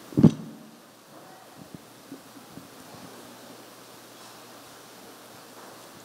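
Microphone handling noise: one loud thump as the microphone is taken out of its stand clip. It is followed by quiet room tone with a few faint rustles and ticks of the microphone and papers being handled.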